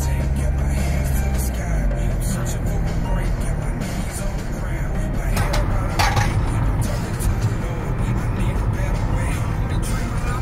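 Road and wind noise from a moving car, with music playing over it. A deep held bass tone fades out about one and a half seconds in, leaving a steady low rumble.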